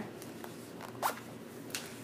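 Zipper on a pink fabric zip-around organizer case being pulled open, in a few short strokes.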